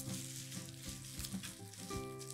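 Chef's knife slicing through a bunch of fresh parsley on a bamboo cutting board: a crisp, rustling crunch of leaves and stems with a few faint knocks of the blade on the board. Background music plays underneath.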